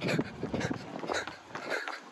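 A man breathing hard at the end of a 10-mile run, with scattered footsteps and handling knocks.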